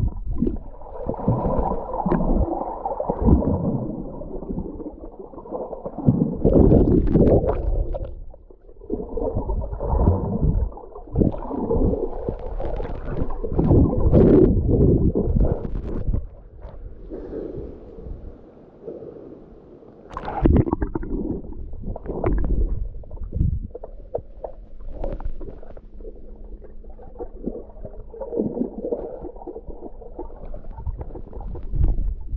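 Muffled water sounds heard through a camera held underwater: irregular gurgling and sloshing that swells and fades, with a few sharper splashes. A quieter stretch comes a little past halfway, ending in a sudden splash.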